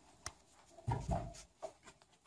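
Quiet room with faint movement noises: a sharp click, a soft rustle about a second in, and two small ticks near the end.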